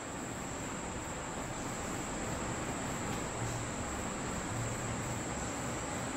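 Steady high-pitched whine over an even background hiss, with no distinct knocks or cutting strokes.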